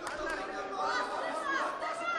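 Several people's voices talking and calling out over one another in a large hall, none of the words clear.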